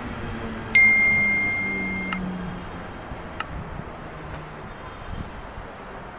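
A Mumbai suburban electric local train slowing to a stop at the platform, its low motor hum sliding down in pitch and fading. Less than a second in, a single high electronic beep sounds loudly, holds steady for about a second and a half, then cuts off. A few sharp clicks follow.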